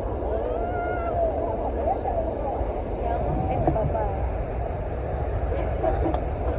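Steady roar of the Iguazú waterfalls, a dense low rumble, with wind buffeting the microphone and the voices of other people on the viewing platform running over it.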